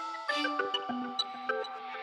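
Electronic theme jingle of a TV show's title sequence: short, bright pitched notes over a few held tones.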